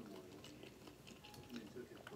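Faint chewing with the mouth closed, with soft short mouth clicks.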